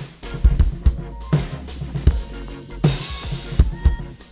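Acoustic drum kit played along with a recorded backing track: kick-drum and snare strokes over sustained bass and keyboard notes, with a cymbal crash about three seconds in.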